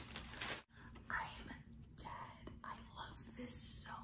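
Stiff paper wrapping rustling and crinkling as a package is opened, cutting off after about half a second, followed by soft whispering.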